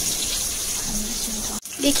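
Whole spices and green chillies sizzling in hot oil in a kadhai, a steady hiss that breaks off briefly near the end.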